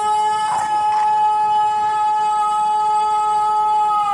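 A siren holding one loud, steady tone, starting to wind down in pitch at the very end: the ten o'clock siren that signals the Indonesian Independence Day flag salute.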